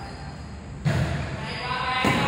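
A volleyball struck by a player's hands: one sharp smack a little under a second in and another right at the end, ringing in a large hall.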